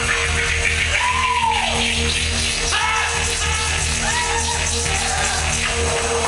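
Loud live music played over a club sound system: a steady heavy bass and a held note throughout, with short pitched phrases that rise and fall over it about a second in, again near three seconds and at four seconds.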